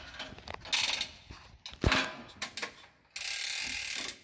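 Hand-cranked winch on a missile loading frame being worked to hoist an RBS-15 missile, with ratchet clicks and gear and pulley noises. A sharp knock comes just before two seconds in, and a second of steady rasping noise comes near the end.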